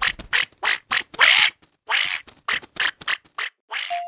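Cartoon duckling quacking, about a dozen short quacks in quick succession with one longer quack about a second in.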